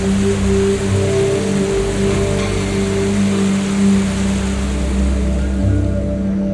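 Ambient music with sustained low tones, over the steady rush of a whitewater mountain stream.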